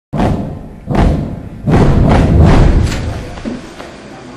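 Three deep, heavy impacts a little under a second apart, the third held longer before fading, forming a dramatic intro sting for a logo.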